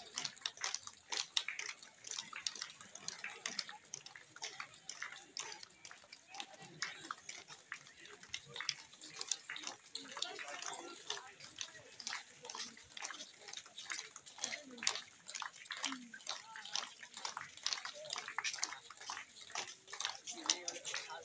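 Crowd of people walking past on a paved road: many overlapping, irregular footsteps with indistinct voices.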